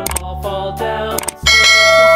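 Background music, then about a second and a half in a loud bell-like chime sound effect rings out and keeps ringing. It matches the bell icon of a subscribe-button animation.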